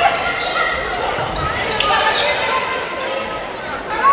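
Volleyball rally in a gymnasium: players' calls and spectators' voices echo through the hall, with a few sharp hits of the ball spread across the rally.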